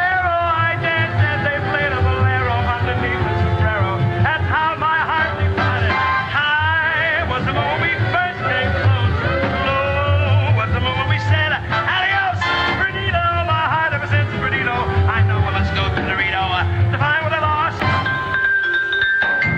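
Up-tempo swing band music with a steady beat and a strong bass pulse. Near the end, ringing notes struck on a mallet keyboard come in.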